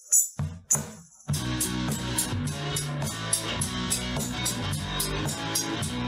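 A small acoustic band starts a country-rock song live. After a couple of lead-in hits, strummed acoustic guitars, bass and a hand shaker come in together about a second in and keep a steady, driving rhythm.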